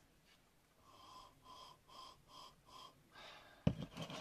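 A person sniffing a glass of cider: five short, quick sniffs in a row, about three a second, nosing its aroma. A sharp knock near the end.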